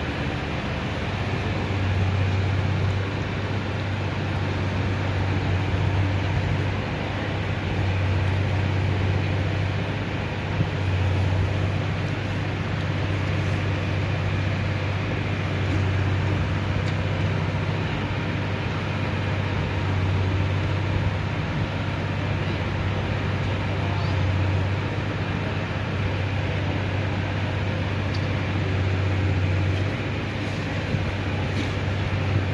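Floodwater rushing through a flooded street: a steady rush of noise with a deep rumble that swells and fades every few seconds.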